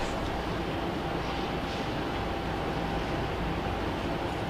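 Steady low rumble and hiss of room noise, with a faint steady hum.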